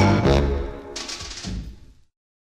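Closing bars of a 1950s orchestral pop record. A held note breaks off into a final low chord that dies away, with two softer hits about a second in and near the end.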